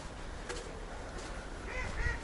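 Waterfowl on a partly frozen pond giving a quick run of short calls near the end, over a low background rumble.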